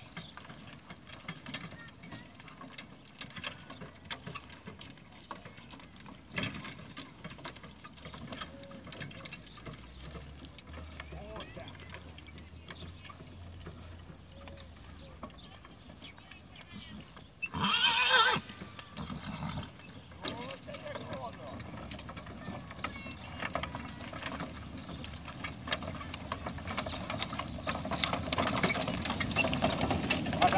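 Draught horses pulling a wooden cart over grass, with one loud horse whinny a little past halfway. Hoofbeats and the cart's rattle grow louder near the end as the horses come close.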